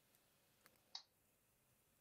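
Near silence: room tone, with one short faint click about a second in.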